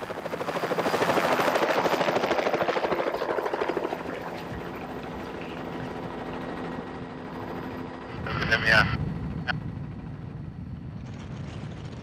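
Helicopter rotor chop, fast and even, swelling loud over the first few seconds and then settling into a steadier engine and rotor hum. A brief voice breaks in about two-thirds of the way through.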